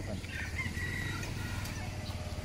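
A bird's call, held for about half a second, over a steady low rumble.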